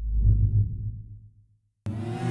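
Deep, low boom of an animated-logo sound effect, fading away over about a second and a half. Near the end a whoosh and music start suddenly.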